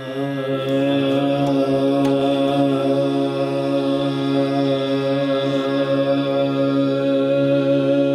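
A male voice holds one long, steady sung note in Hindustani classical vocal style, unchanging in pitch throughout, with the even, chant-like tone of a sustained opening note.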